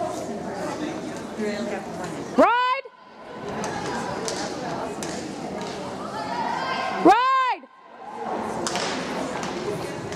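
Two loud, short yelled whoops from a spectator cheering a barrel-racing horse, each rising then falling in pitch, about two and a half seconds in and again about seven seconds in, over echoing arena chatter and the dull thuds of hooves galloping in the dirt.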